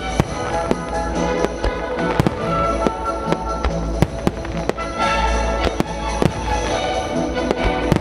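Fireworks shells bursting in a rapid, irregular run of sharp reports, several a second, with music playing throughout under the bursts.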